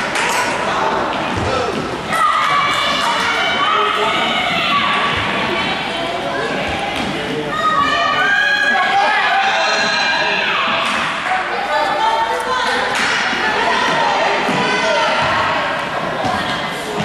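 Echoing gymnasium noise from an indoor youth soccer game: high-pitched shouts from children and calls from onlookers, over the repeated thump of a soccer ball kicked and bouncing on a hardwood floor.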